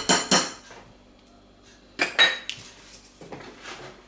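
Metal hand-mixer beaters knocked against a glass mixing bowl: two ringing clinks at the start, then after a short pause two sharper clatters about two seconds in, followed by softer scraping.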